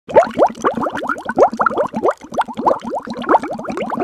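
A rapid run of bubbly, watery 'bloop' plops, about four to five a second, each a quick upward swoop in pitch. It is a sound effect laid over the opening title.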